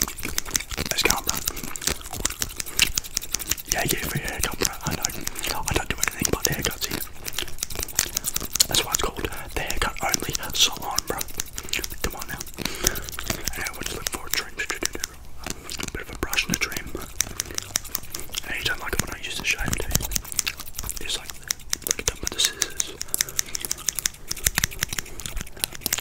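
Scissors snipping and a comb raking close to a microphone, making a dense, continuous run of crisp clicks and scrapes.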